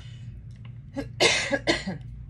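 A woman coughing, a quick run of about three coughs starting about a second in.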